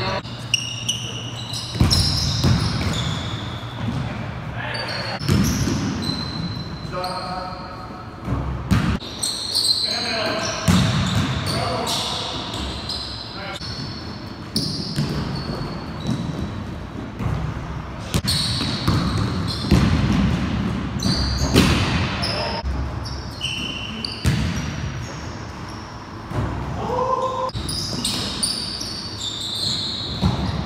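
Pickup basketball game on a hardwood gym floor: a basketball bouncing and thudding, with short high sneaker squeaks. Everything echoes in the big hall, and players call out indistinctly.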